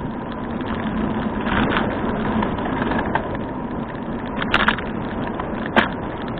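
Steady road and wind noise from a camera on a moving bicycle, with two sharp knocks near the end.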